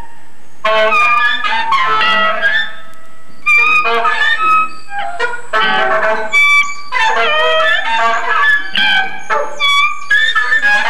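Saxophone playing short broken phrases of bending, wavering notes in a free improvisation, with the band behind it; the line breaks off in the first half-second and again around three seconds in.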